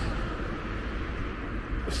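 Steady low rumble of road traffic in the background, with no distinct events.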